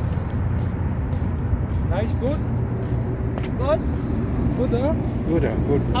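A steady low rumble throughout, with a few short voice sounds between about two and five and a half seconds in.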